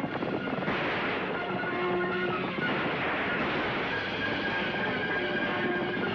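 Horses galloping, a fast rush of hoofbeats, under orchestral chase music with held notes.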